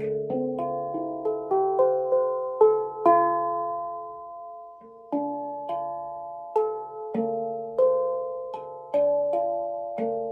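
Steel handpan struck with mallets, its notes ringing on and overlapping one another. A quick rising run of notes fills the first three seconds, one note then rings out alone, and about five seconds in a slower run of single strikes begins.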